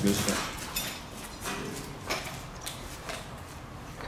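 Footsteps on asphalt: a few faint, evenly spaced steps over a steady outdoor background hiss.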